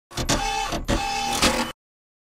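Short intro sound effect: a few sharp hits with a steady tone held between them, cutting off suddenly just before the logo appears.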